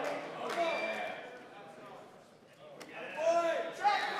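Indistinct voices talking in a large, echoing hall. They fade for about a second in the middle, and a single sharp click comes near the three-second mark.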